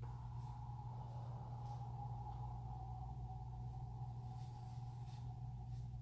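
Quiet room: a steady low hum, with a faint high tone that comes in at the start and slowly sinks a little in pitch. Now and then there is a faint soft tick.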